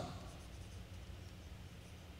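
Faint scratching of a stylus writing on a screen, over a low steady hum.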